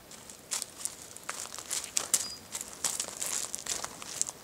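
Irregular crunching and crackling of footsteps on loose pea gravel, with leafy branches rustling close by.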